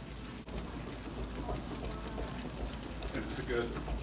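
Small clicks, knocks and scrapes of a metal denture flask being handled and fitted into a bench press, over a steady low hum, with a voice in the background near the end.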